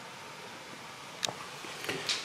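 Faint steady room hiss with one sharp click a little over a second in and a couple of light clicks near the end, from a hand handling the skateboard's plastic electronics-enclosure lid.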